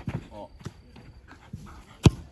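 Short thuds of a soccer ball being struck during a rapid-fire goalkeeper shot drill: one right at the start and another a little before a second in.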